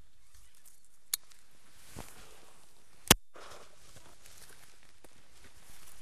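Shotgun shots: a sharp report about a second in and a much louder one about three seconds in, with a fainter thump between them.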